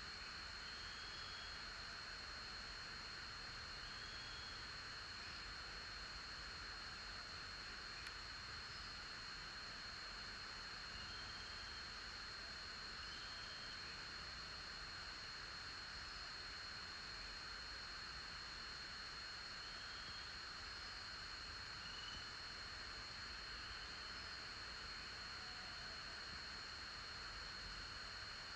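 Faint outdoor ambience: a steady high-pitched insect drone over hiss, with a few short, faint chirps scattered through.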